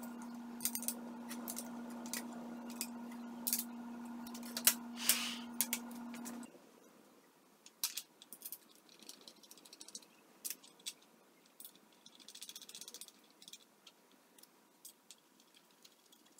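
Small metallic clicks, taps and rattles of hand tools and aluminium machine parts being handled and fitted together. A steady hum sits under the first six seconds and cuts off suddenly.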